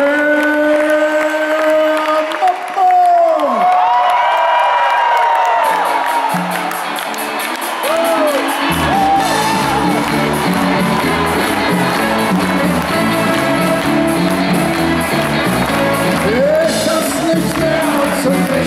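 Live rock concert sound with the crowd cheering and a voice holding long, bending notes. A ticking percussion rhythm starts about six seconds in, bass joins, and the full band sets into a steady groove for the next song from about nine seconds on.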